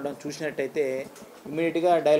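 A man's voice speaking in short phrases, with a brief pause about halfway through.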